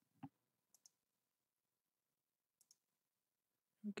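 Near silence broken by a few faint computer mouse clicks, the first the clearest.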